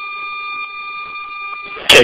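A steady electronic tone, one pitch with a higher overtone, over faint hiss on narrow-band fire radio audio, heard between transmissions. It cuts off near the end as the next voice comes in.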